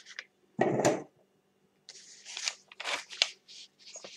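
Clear plastic cutting plate of a Big Shot die-cutting machine being handled and laid over metal dies. One loud plastic clatter comes a little over half a second in, then a run of light clicks and scrapes.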